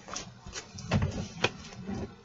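A dog sneezing and snorting, several short sharp sounds over a couple of seconds.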